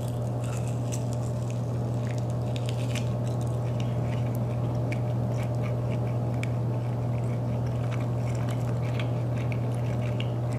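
A person biting into and chewing a sauced bone-in chicken wing, with many small wet mouth clicks and smacks, over a steady low hum.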